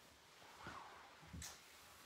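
Near silence: room tone with a few faint, soft rustles of a body and clothing shifting on a wooden floor, the clearest a brief brush about three-quarters of the way through.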